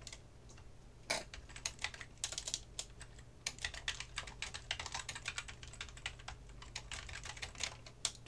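Typing on a computer keyboard: a quick, uneven run of keystrokes that starts about a second in and carries on nearly to the end.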